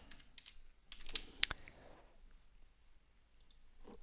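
Typing on a computer keyboard: a short, faint run of separate keystrokes in the first half, with one sharper click about one and a half seconds in.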